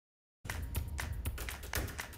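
TV news segment theme music that cuts in suddenly after dead silence about half a second in, with a quick run of sharp percussive hits over a low bass.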